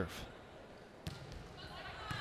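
One sharp smack of a hand striking a volleyball on the serve, about a second in. Otherwise a faint background hum from the gym.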